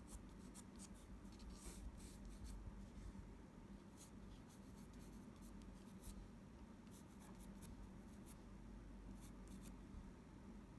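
Faint scratching of a graphite pencil sketching on watercolour paper, in short, irregular strokes.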